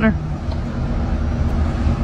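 Road traffic on the road alongside: a steady low rumble of passing vehicles.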